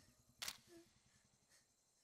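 Near silence, broken by one sharp click about half a second in.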